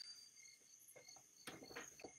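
Near silence: room tone with a faint, steady high-pitched tone and a couple of faint clicks about one and a half seconds in.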